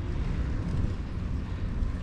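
Steady wind rumble buffeting an outdoor camera microphone, deepest at the low end, with a lighter hiss above.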